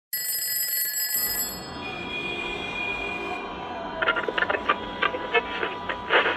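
Alarm clock ringing for about the first second and a half, then a steadier noisy sound with high tones, turning busier, with rapid clicks, from about four seconds in.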